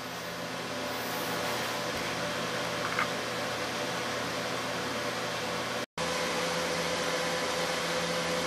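Steady background hiss with a faint, steady electrical hum. It drops out for an instant about six seconds in, after which a thin steady tone is a little clearer.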